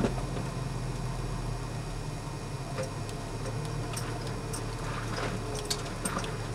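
Inside the cabin of an FJ Cruiser crawling over a rocky trail: a steady low engine drone with scattered small clicks and rattles from the interior.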